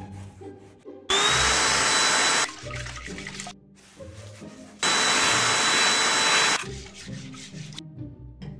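Handheld vacuum cleaner running in two separate bursts of under two seconds each, a rushing noise with a steady high whine, each starting and stopping abruptly.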